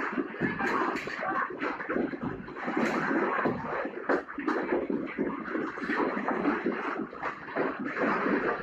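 An office rattling and clattering without a break under earthquake shaking: desks, shelves, printers and loose objects knock against one another in many quick irregular knocks.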